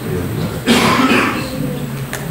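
A person coughs once, a short harsh burst a little under a second in.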